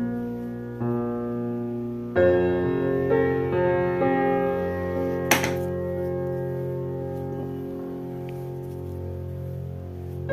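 Slow background piano music with sustained, ringing chords; a louder chord comes in about two seconds in. A brief click sounds a little past halfway.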